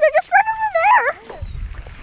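A high-pitched vocal call about a second long, wavering up and down, then held level, then dropping away. After it comes a low rumble and rustle.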